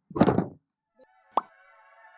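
A short noisy burst, a moment of silence, then a single sharp pop-like hit from an edited logo sting, under which a held synthesizer chord starts and slowly swells as electronic music begins.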